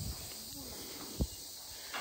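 Quiet forest background: a faint, steady, high insect hiss, with one soft knock a little after a second in.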